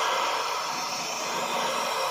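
AKM1530C CNC router spindle running and cutting into an MDF board, a steady rushing noise.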